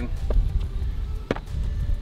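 Low wind rumble on the microphone, with one sharp knock a little past the middle and a fainter tick just before it.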